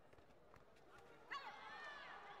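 Faint footfalls and scuffs on the taekwondo mat, then about a second and a half in, a sudden high-pitched shout.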